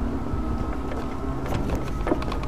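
A small vehicle running along a road: steady rumble of wheels and motor with a faint steady hum and wind on the microphone, and a few brief rattles near the end.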